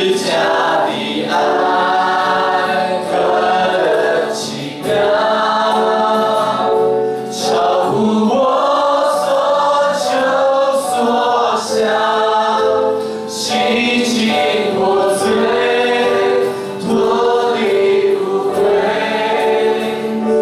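Worship leader and congregation singing a Mandarin worship song together with instrumental accompaniment, phrase after phrase with short breaks for breath.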